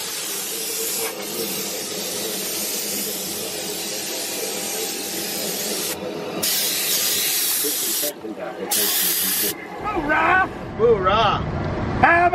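Steady hiss, broken by two louder bursts of spraying hiss about six and a half and nine seconds in, each lasting about a second; a voice starts near the end.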